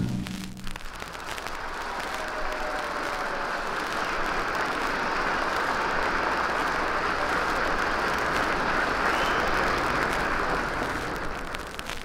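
Audience applauding at the end of a big-band number, the clapping building up, holding steady, then dying away near the end.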